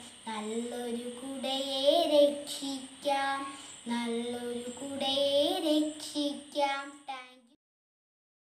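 A young girl singing a Malayalam poem solo, her voice holding and gliding between notes; she stops about seven and a half seconds in.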